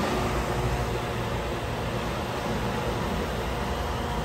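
Steady background hum and hiss, even throughout, with no distinct knocks or events.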